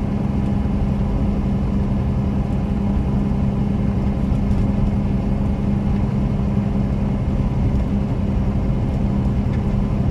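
Cummins 5.9-litre 12-valve straight-six turbo-diesel of a 1993 Dodge Ram 250 pulling the truck at a steady cruise, heard from inside the cab with road rumble. The engine note holds at an even pitch, with no shift or rev change.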